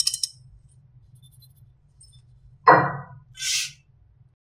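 Fingernails clicking and tapping against a small bottle at the start, then a single loud dull thump near the end, followed by a short soft hiss.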